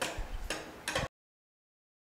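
Screwdriver working a screw in a gas stove's steel burner, giving a few light metallic ticks. The sound cuts off to dead silence about a second in.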